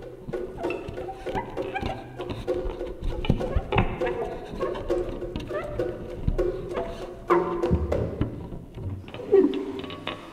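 Live electroacoustic ensemble improvising freely: scattered percussive strikes and short pitched fragments over a low rumble, with louder hits about seven seconds in and just before the end.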